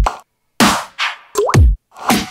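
Electronic dance-music drop playing back from a GarageBand beat: deep kick drums, cymbal crashes and noise hits, with a short gliding synth tone. Two brief dead-silent gaps cut between the hits.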